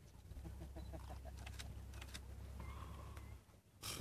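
Faint short bird chirps, two of them close together near the end, over a low steady rumble that cuts out shortly before the end.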